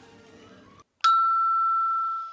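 A single chime-like ding, one steady bell tone that sets in suddenly about a second in after a brief drop to silence, then fades away. It falls at the cut between two scenes, as a transition sound effect.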